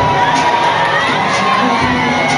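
Large crowd cheering and shouting steadily, many voices at once.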